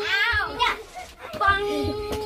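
Several children shrieking, squealing and shouting as they play a pillow fight, with high-pitched cries about the start and a long held cry near the end.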